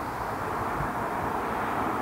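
Steady outdoor background noise with a low rumble, no distinct event standing out.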